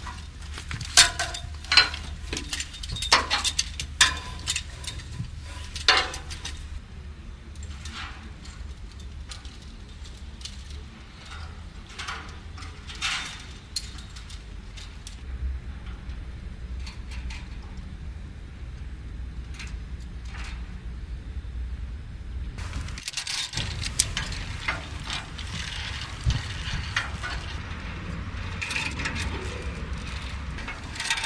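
Metallic clicks and clanks of climbing a steel ladder in safety harnesses: hands and boots on the steel rungs, with harness hardware clicking against the steel, over a steady low rumble. The sharpest knocks come in the first six seconds.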